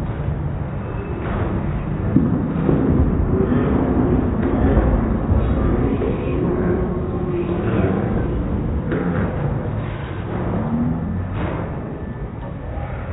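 Bowling alley din: a low rumble of balls rolling down the lanes and pins being knocked over, swelling for a few seconds, with a sharp knock about two seconds in and faint musical tones beneath.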